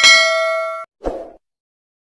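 Bright bell-like chime sound effect, the ding of a notification-bell animation, ringing out and fading in under a second. A short, lower sound follows about a second in.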